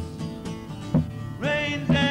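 Acoustic guitar strummed, with accented strokes about once a second, and a voice holding a long sung note in the second half.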